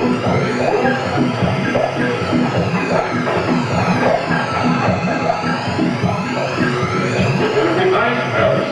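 Live electronic music with a dense, pulsing beat. A slow sweep rises and falls in the treble, about once every six seconds.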